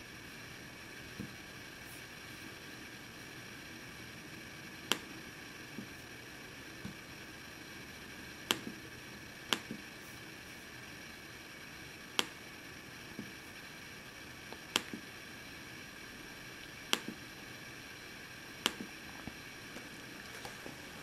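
Irregular sharp clicks, one every second or two, from hands working a Dell XPS 13 laptop's touchpad and keys, over a faint steady hiss.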